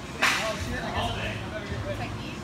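Faint background voices echoing in a large gym, with a short hiss-like burst just after the start.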